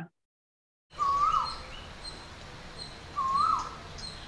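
Dead silence for about the first second, then steady background hiss. Over the hiss a bird gives a short call twice, about two seconds apart, with fainter higher chirps between.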